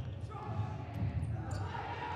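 Futsal ball being kicked and played on a wooden indoor court, a few light knocks over the low hum of a large hall.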